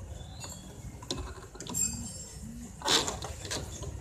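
Scattered metallic clinks, knocks and scraping from hands working among hoses and parts in a pickup's engine bay, with the loudest clatter about three seconds in.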